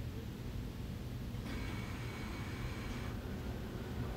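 Cardboard packaging being handled, with a faint rustle of the box from about a second and a half in to about three seconds, over a steady low rumble.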